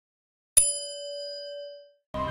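A single notification-bell ding sound effect: struck once about half a second in, then ringing out with one clear tone that fades away over about a second and a half.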